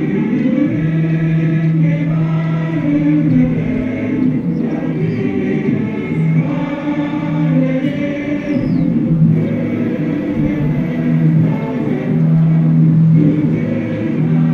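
Choral music: a choir singing in long, held notes.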